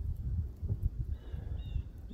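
Footsteps through dry grass and leaves, heard as irregular low knocks and rustle, with a couple of faint, short high chirps in the second half.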